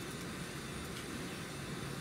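Steady room tone in a lecture room: an even low hiss with a faint rumble underneath, and no speech.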